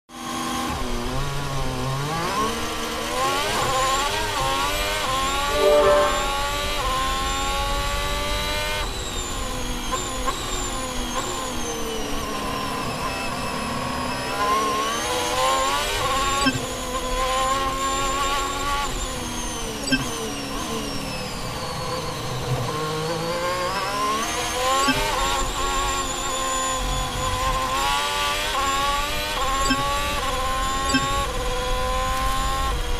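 Onboard sound of an Alfa Romeo C39 Formula 1 car's Ferrari 1.6-litre turbocharged V6 hybrid engine at full throttle on the opening lap. The pitch climbs and drops sharply with each upshift. It falls away twice as the car slows for corners, about 12 and 20 seconds in, before climbing again.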